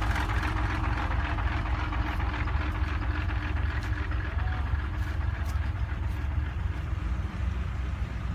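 Dump truck's engine running with a steady low rumble, its higher-pitched noise thinning out after a few seconds.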